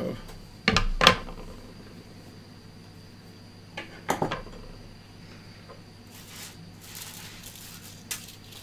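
Metal hand tools, long-nose pliers and side cutters, being handled and set down on a desk: two sharp clacks about a second in and a few lighter clicks around four seconds in, then faint rustling near the end.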